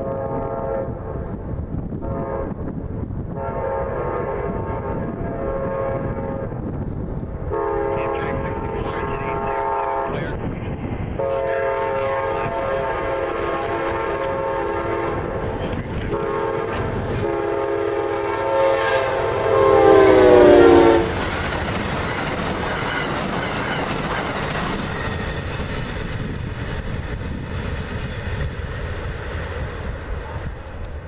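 Amtrak GE P42DC locomotive 822 sounding its horn in a series of long blasts for a grade crossing, the last blast loudest and falling in pitch as the engine passes. The horn cuts off, and the train's cars rumble by with a clickety-clack of wheels on the rail joints.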